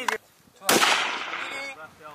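A single sniper rifle shot about two-thirds of a second in, its report fading out over about a second.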